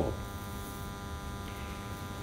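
Steady electrical mains hum with many evenly spaced overtones, faint and unchanging.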